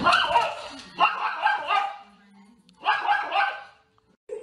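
A dog barking and yipping in three short bouts.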